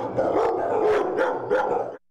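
Dogs barking in shelter kennels, the barks coming thick and overlapping without a break.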